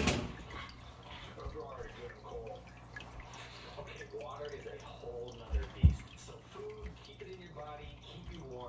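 Quiet, indistinct voices in a room, with a few dull thumps, the loudest about six seconds in.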